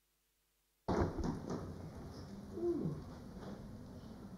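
Room noise of a debating chamber that starts abruptly about a second in with a few knocks and rustles, then a steady low hum, with one short low falling call near the middle.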